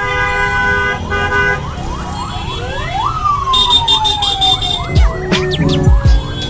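Street traffic with vehicle horns honking, then an emergency siren yelping in quick rising sweeps and sliding down in one long falling wail. A couple of low thumps come near the end.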